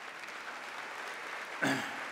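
Audience applause, a low, steady patter of many hands clapping.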